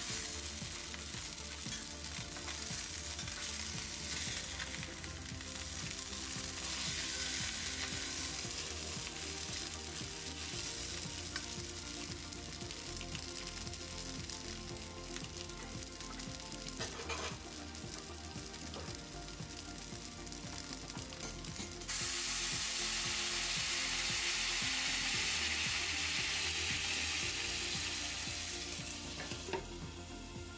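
Hamburg steak patties sizzling steadily in hot oil in a skillet, browning on both sides. The sizzle grows louder and brighter about two-thirds of the way through, then eases near the end.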